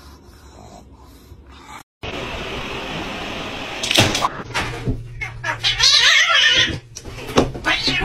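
A robot vacuum running with a steady hum. Several loud, irregular bursts of noise come over it in its second half.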